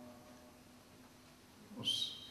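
A pause in a man's speech: faint room tone with a low steady hum, then near the end a brief high-pitched squeak.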